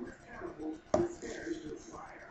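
A single sharp snap about a second in.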